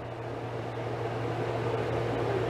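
A steady low mechanical hum with an even whirring noise that grows slightly louder, like a small motor or fan running.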